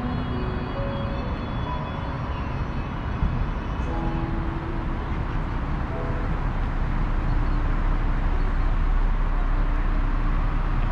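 Steady outdoor street ambience: a dense low rumble that grows slightly louder in the second half, with a few faint musical tones over it.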